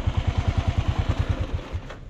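Single-cylinder motorcycle engine idling with an even, rapid thump of about twelve beats a second, cutting off near the end.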